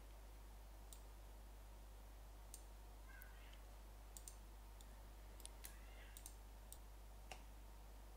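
Near silence with about ten faint, scattered computer mouse clicks over a steady low hum.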